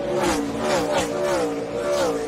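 NASCAR Cup Series stock cars' V8 engines at full throttle as several cars pass in quick succession. Each engine note drops in pitch as its car goes by.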